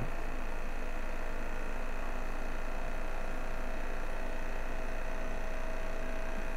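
Battery-powered ATMAN ATOM-2 aquarium air pump running, pushing air through an air stone in a fish tank: a steady, fairly loud hum.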